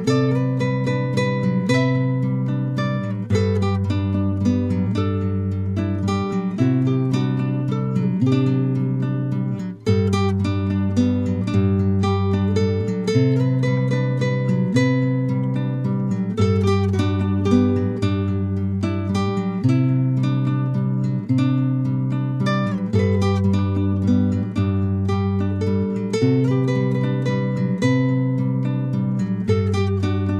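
Background music: a plucked acoustic guitar playing over a repeating chord progression, with a brief drop in loudness about ten seconds in.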